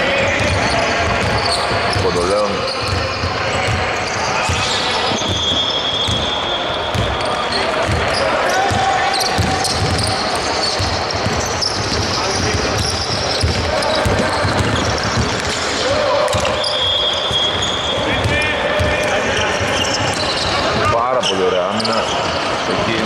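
A basketball being dribbled on a hardwood court during a game, with repeated bounces and players' voices ringing in a large hall.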